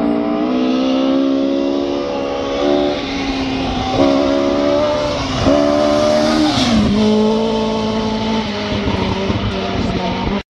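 Rally car flat out on a gravel forest stage, its engine note breaking briefly twice as it shifts gear, then falling in pitch as it passes, over a hiss of tyres on loose gravel.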